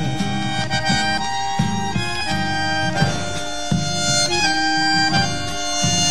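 Instrumental passage of an Argentine folk song, with held melody notes on an accordion- or fiddle-like instrument over a steady accompaniment, between two sung verses.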